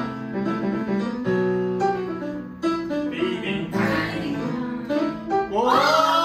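Music with strummed acoustic guitar and singing, played over the television in the room.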